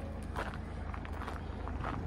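Footsteps on gravel over the steady low hum of a 2015 Ford Galaxy's electric tailgate motor as the tailgate powers down to close.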